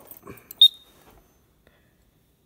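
A single short, high electronic beep from a Silent Knight fire alarm annunciator keypad as its RESET button is pressed, starting a system reset.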